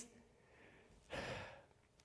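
Near silence, then a single audible breath by a man close to a microphone, about a second in and lasting about half a second.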